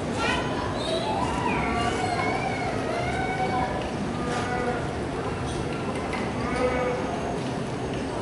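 Indistinct voices of people talking in the background, over a steady crowd-and-room noise.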